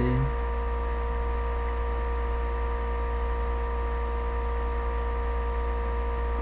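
A steady, unchanging hum made of several fixed tones, the deepest the strongest, over an even hiss.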